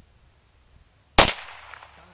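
A single shot from a .22 pistol about a second in: one sharp crack with a short fading tail.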